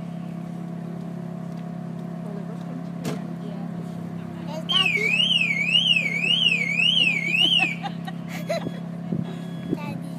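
Car alarm siren sounding, its pitch sweeping up and down about twice a second for about three seconds midway, over a steady low hum.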